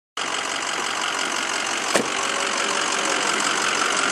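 A vehicle engine idling steadily, with a single sharp click about two seconds in.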